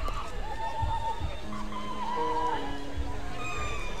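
Music over a ballpark public-address system heard at a distance, with crowd and field ambience; a few long held notes step down in pitch from about a second and a half in.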